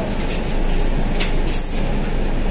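Scania N320 city bus heard from the driver's seat, its engine and cabin running with a steady rumble as it creeps forward. Short clicks and a brief high hiss come a little past the middle.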